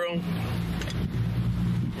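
Motorboat engine running steadily underway, a low even hum, with wind and water rushing past the hull.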